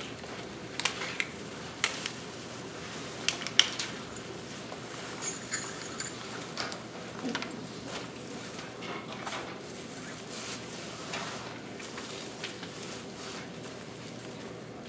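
Room noise in a small hall: scattered sharp clicks, taps and knocks of people moving about and handling things, loudest in the first few seconds, over a steady low background hum.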